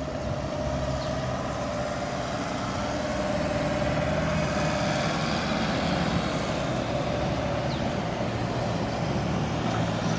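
Steady road-traffic noise: the engine and tyre hum of passing vehicles.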